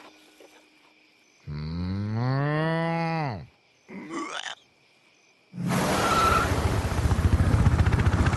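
A cow's long moo that rises and then falls in pitch, followed by a short second call. About five and a half seconds in, a loud, fast rhythmic chopping of a helicopter's rotor starts.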